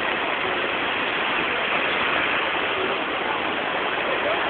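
Fountain water jets falling and splashing into the pool, a steady rushing hiss.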